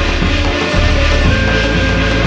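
Loud Korean shamanic gut ritual music playing without a break, dense from low to high pitch.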